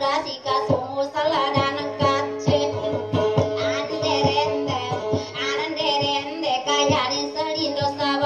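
A high-pitched voice singing a dayunday, the Maranao sung duet form, over instrumental backing with held notes and a steady beat.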